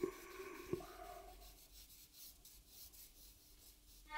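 Stick of soft charcoal scratching and rubbing faintly across drawing paper, mostly in the first second and a half, with a light tap about three-quarters of a second in.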